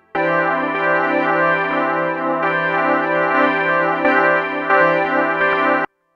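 Roland J-6 chord synthesizer playing one held chord preset. The chord sounds steadily for almost six seconds, then cuts off suddenly.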